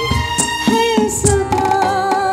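Live band playing a Hindi film song: a melody of held, slightly wavering notes over tabla and electronic hand percussion beats.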